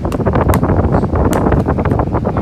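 Air from a nearby electric fan buffeting the microphone as a steady rumbling wind noise. A plastic DVD case being handled is heard as rustling, with a few sharp clicks about half a second in and again after a second.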